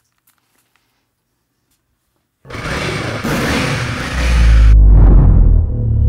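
Near silence for about two and a half seconds, then a sound-effects track starts: a loud rush of noise, then a deep boom that builds about four seconds in and keeps rumbling.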